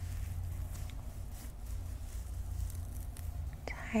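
Steady low hum with a few faint soft clicks. A woman's whisper begins just before the end.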